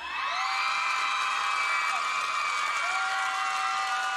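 Studio audience cheering and screaming, with long high-pitched shrieks held over a steady din of crowd noise.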